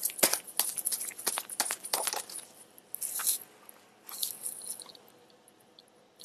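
A deck of tarot cards being shuffled and handled: rapid crisp flicks and slaps of card stock in a dense run, then two shorter bursts, dying away near the end.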